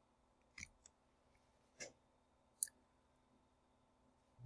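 About four short, sharp clicks at a computer, spaced irregularly, the loudest about two and a half seconds in, over near-silent room tone; they come as the lecture slide is advanced.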